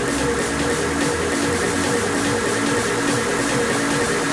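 Electronic dance music from a live DJ mix on CDJ decks and a mixer, running with a steady, even beat.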